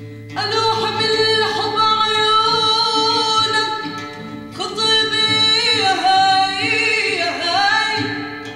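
A woman singing solo in an ornamented Middle Eastern style: two long phrases of held notes with wavering turns and melismas, the second starting about halfway through, over a steady low drone.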